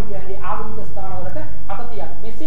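Speech only: one voice talking without a break.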